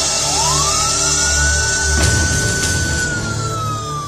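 An emergency vehicle siren wails once: its pitch rises quickly, holds high, then slowly falls. It plays over background music with a low steady drone, and a sudden noise cuts in about halfway through.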